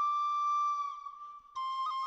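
Flute melody: one long held note that tails off about a second in, then after a brief gap the flute comes back with shorter notes that bend in pitch.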